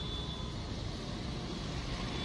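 Steady street traffic noise, with a faint high steady tone running through it.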